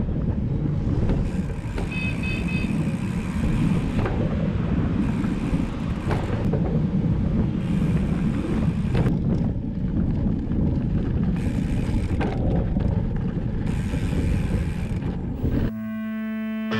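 Riding noise on a bike-mounted action camera: steady wind rumble on the microphone with tyre noise on concrete, and a few knocks and rattles from the hardtail mountain bike. A brief high-pitched tone comes about two seconds in, and electric guitar music starts right at the end.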